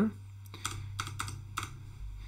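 Computer keyboard keystrokes: several light clicks as the Enter key is tapped, over a low steady hum.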